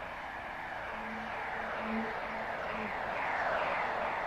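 Children's-programme soundtrack: soft held musical notes under a run of falling whooshing sweeps that grow louder toward the end.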